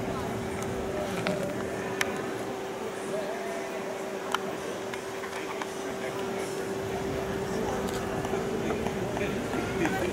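Indistinct voices of people talking at a distance, over a steady hum, with two sharp clicks about two and four seconds in.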